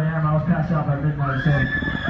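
A man's voice over the PA, then, about a second in, high-pitched screams from the crowd that rise and are held.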